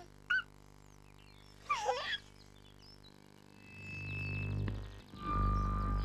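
A baby's giggle about two seconds in. After it come two long swelling sound effects of the voice trumpet rising from the ground, each a whoosh with a held tone; the second stops suddenly at the end.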